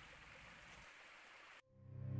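Near silence: the faint, steady rush of a shallow forest stream, which cuts off about one and a half seconds in. Music begins to fade in at the very end.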